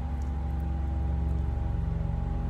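A steady low mechanical drone with a faint constant whine above it, a little louder through these seconds, with a few faint clicks of chewing.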